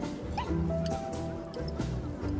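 Background music with a bass line and held notes. A short high gliding sound cuts through it just under half a second in.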